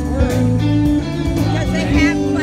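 Live band music, a lead electric guitar playing over steady low bass notes.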